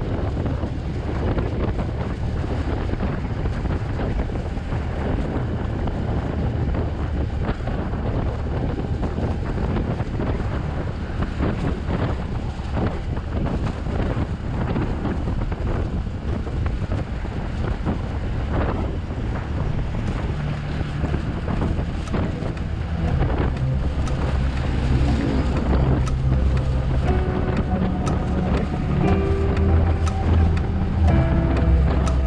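Wind rushing and buffeting over the microphone of a moving motor scooter, with a low engine and road rumble underneath. Near the end, music with steady pitched notes starts to come in over it.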